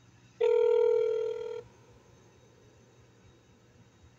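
Telephone ringback tone heard through a phone speaker: one steady, slightly buzzy tone lasting just over a second, starting about half a second in, while the call rings through to the transferred line.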